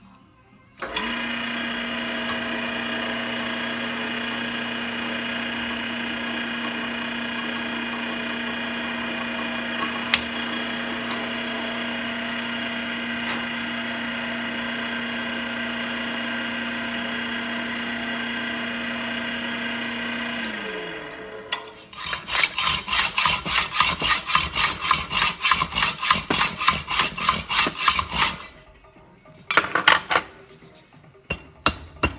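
Drill press motor running steadily, then switched off and spinning down, its hum falling in pitch. About a second later comes a run of quick, even hand-sawing strokes, about four a second, for some seven seconds.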